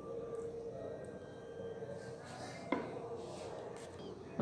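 Quiet kitchen room tone with a faint steady hum, broken by one short sharp click a little after halfway, likely a utensil or dish being handled.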